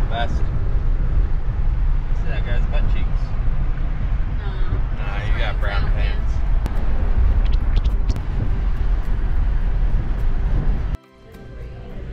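Road and wind noise inside a moving car at highway speed: a steady low rumble that cuts off abruptly about eleven seconds in. Background music plays over it.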